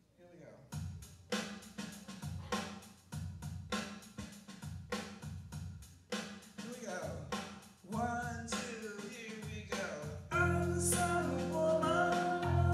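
Live keyboard music with a steady drum beat, strikes about every 0.6 s, starting a song. Near the end, louder sustained chords come in.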